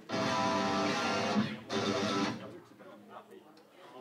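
Electric guitar chord strummed and left ringing through the amplifier for about a second and a half, then a second, shorter chord that stops just after two seconds in.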